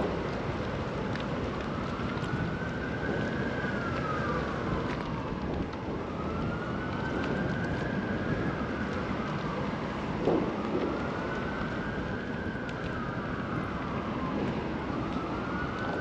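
Emergency vehicle siren on a slow wail, its pitch rising and falling about every four and a half seconds, over steady traffic and wind noise. A short bump about two-thirds of the way through.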